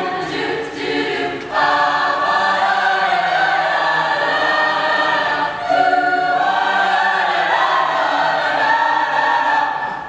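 High school mixed choir singing long held chords, moving to a new chord about a second and a half in and again around six seconds in.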